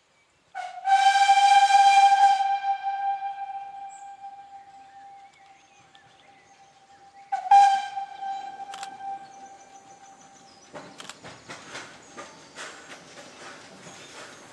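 Whistle of a narrow-gauge steam locomotive: one long blast on a single note that fades away over several seconds, then a second shorter blast about seven seconds later. After that comes a run of irregular clicks and knocks as the train draws nearer.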